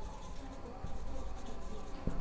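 Marker pen writing on a whiteboard: faint scratching strokes as the tip moves across the board.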